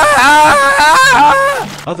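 A person screaming loudly, a long wavering scream that wobbles in pitch and breaks off near the end, played as the sound of someone being mauled by an alligator.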